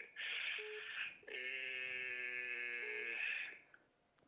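A faint voice over a phone line, thin and tinny, making a long drawn-out vocal sound held on one steady pitch for about two seconds.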